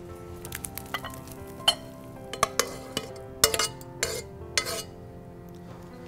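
Metal serving spoon scraping and knocking against a pot and a glass bowl as cooked rice and beans are spooned out. It makes a run of irregular scrapes and clinks, several of them sharp and briefly ringing.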